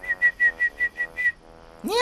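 A man whistling a bird-call imitation: a quick run of about eight short chirps on one high pitch, lasting just over a second.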